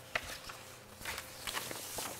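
Papers being handled and shuffled on a table: a few short knocks and rustles, busier in the second half.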